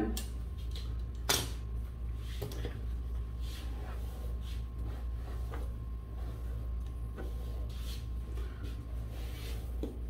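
Faint strokes of a paddle hairbrush through long hair, over a steady low hum, with one sharp click about a second in.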